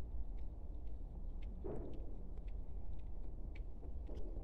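Outdoor background on a handheld microphone: a steady low rumble with a few faint scattered clicks and one soft rustle about halfway through.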